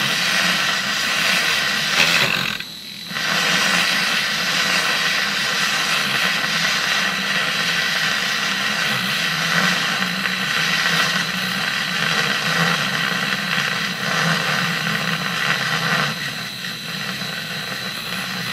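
Handheld wand milk frother whirring steadily in hot milk, with a brief break a little over two seconds in; the milk is still being worked up to a froth.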